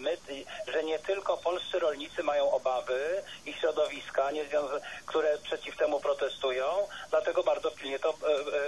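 Continuous speech in Polish, one voice talking without pause, with a thin, radio-like sound.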